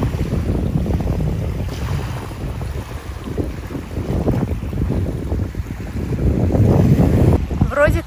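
Wind buffeting the microphone in gusts, a low rumble that swells and eases, with small waves washing up on the sand beneath it.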